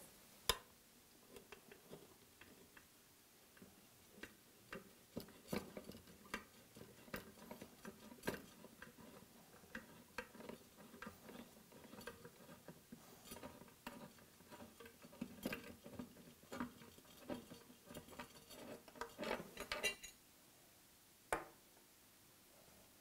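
Small irregular clicks and metallic taps of a screwdriver working the screws of a metal gripper profile, with a louder click about half a second in and a quick flurry near the end.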